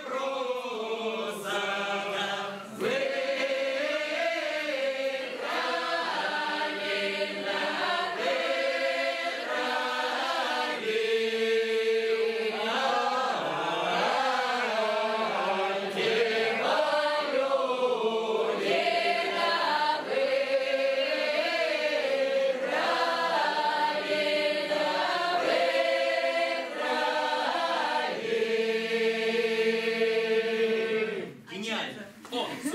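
A group of men and women singing an Upper Don Cossack round-dance (khorovod) song unaccompanied. The song runs in long, drawn-out phrases that end on held notes.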